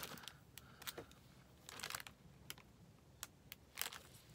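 Quiet, scattered light clicks and taps with faint rustling as paper craft pieces and small trinkets are handled and set down on a cutting mat.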